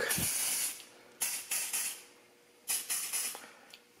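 Smoke Sabre aerosol can of test smoke sprayed at a smoke detector in three short hissing bursts, the last one a little shorter.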